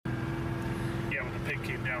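A vehicle engine running with a steady low hum, and a man starting to talk over it about a second in.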